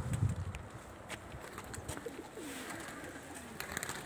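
Domestic pigeons cooing softly in low, wavering calls, near the start and again around the middle. A few light clicks come in between.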